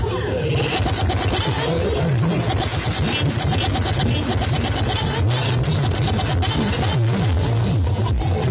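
Music with heavy bass played at high volume through towering stacks of sound-system speaker cabinets.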